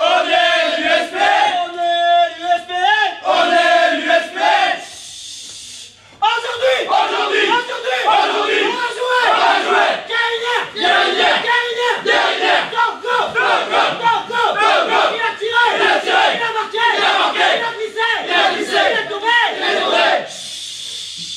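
A huddled group of men chanting together. About five seconds of a sung chant on steady held notes, a short lull, then fast, rhythmic shouting in unison.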